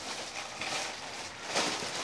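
Clear plastic bag holding an instruction booklet rustling and crinkling as it is handled, louder near the end.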